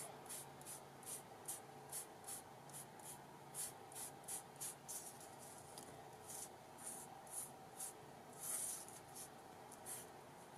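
Yellow sponge stroked across kraft cardstock tags, dragging white gesso on: faint soft swishes about two or three a second, with one longer stroke near the end.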